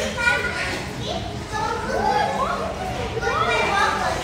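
Young children's voices at play: high calls and squeals, some rising in pitch.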